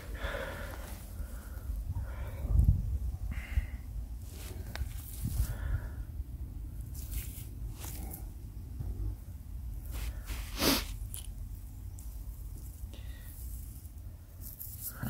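Gloved hand digging and scraping through loose ash and cinder soil, with scattered crumbly scrapes and a few sharp clicks, the loudest about ten and a half seconds in, over a low rumble.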